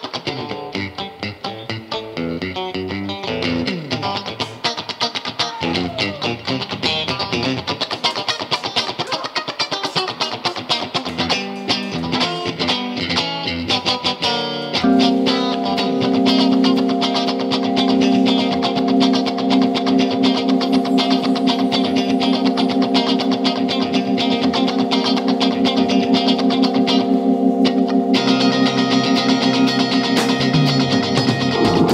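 Live band with electric guitar to the fore, playing a busy run of notes over drums and bass. About halfway through, the band settles onto one long sustained chord while the drums keep a steady beat.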